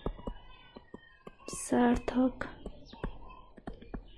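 Light, irregular taps and clicks of a stylus writing on a tablet screen, with a few softly spoken words about halfway through.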